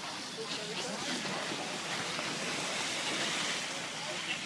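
A large fire burning through a wooden fishing boat: a steady rushing noise with no distinct crackles, and faint voices in the background.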